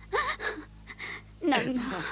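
A voice actor gasping and sobbing between lines: a short breathy rising cry early on, then a falling wail about one and a half seconds in. A steady low hum from the old radio recording runs underneath.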